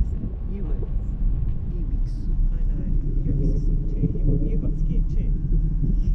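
Wind buffeting the microphone of a parasail rig in flight, a steady low rumble, with faint voices talking underneath.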